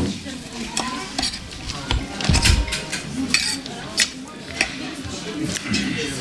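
Metal forks clinking and scraping against plates during a meal, in many short scattered clicks, with a single low thump about two and a half seconds in.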